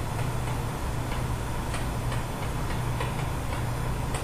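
Light, irregular clicks of a stylus pen tapping a writing surface as a word is handwritten, over a steady low hum.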